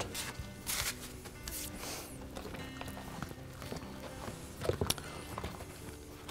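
Faint background music, with a few short rubbing and handling noises as a rag wipes the rim of a washer's outer tub.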